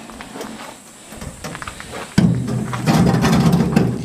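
Brown bear cub right up against the microphone: quiet for about two seconds, then a sudden loud, rough sound lasting nearly two seconds.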